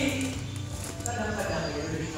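Faint voices of people talking at a distance over a low steady background hum.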